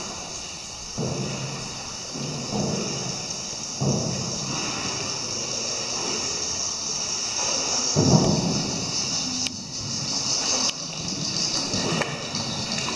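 Muffled low rumbles and knocks a few seconds apart, the loudest about eight seconds in, over a steady high hiss: water and handling noise picked up on a boat moving through the cave.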